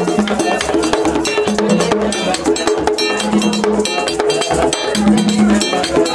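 Vodou ceremony music: hand drums with a clanging metal bell beating a fast, even rhythm, and voices singing over it.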